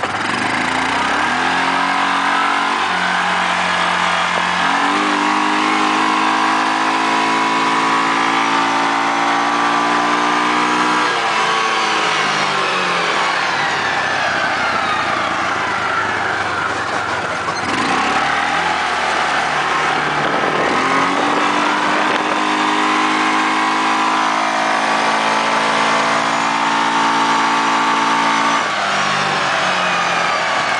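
Yamaha Rhino 450's single-cylinder four-stroke engine pulling the vehicle along: it revs up over the first few seconds, runs steadily at speed, then drops off about twelve seconds in. It picks up and revs up again about twenty seconds in, runs steadily, and falls off again near the end.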